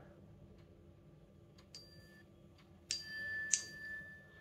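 Faint finger taps on a smartwatch touchscreen, then about three seconds in a steady high electronic tone from the smartwatch lasting about a second, as a sound/vibration setting is toggled.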